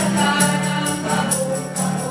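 Mixed choir of men and women singing a gospel song together, accompanied by an acoustic guitar, with a regular bright beat about twice a second.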